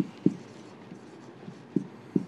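Marker pen writing on a whiteboard: a few short, soft taps as the tip meets the board, twice near the start and again near the end.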